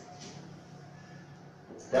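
Quiet room tone with a steady low hum, and a brief faint stroke of a marker on a whiteboard near the start. A man's voice begins just before the end.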